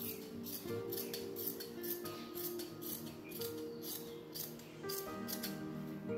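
Tailor's shears snipping through fabric in a quick run of cuts, about two to three snips a second, over background music.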